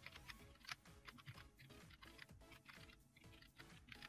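Faint computer keyboard typing: a quick, irregular run of key clicks as a line of text is entered, over soft background music.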